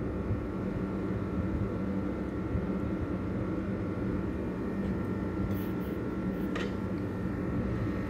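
Steady low mechanical hum of a running motor, with a faint click twice in the second half.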